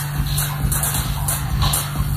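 Live electronic music played on hardware synthesizers: a steady low bass tone with short, high hisses recurring about twice a second.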